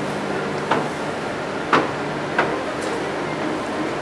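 Three short knocks, the middle one loudest, as a glass wine bottle is slid back into a wooden rack shelf, over the steady hum of the cellar's air conditioning.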